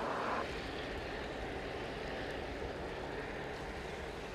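Steady outdoor background noise with an uneven low rumble; a louder sound cuts off about half a second in.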